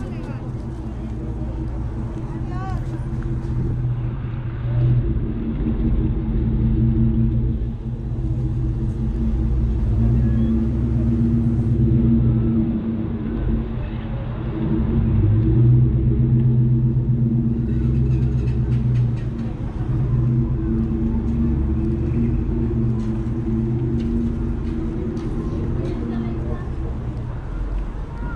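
Street sound: a steady low engine drone from vehicles, swelling and easing, with people's voices.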